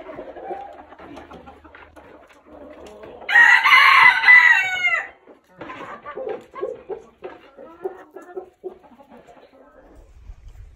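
A Silkie rooster crowing once, about three seconds in, the crow lasting just under two seconds and dropping in pitch at its end. Softer clucking from the flock comes before and after it.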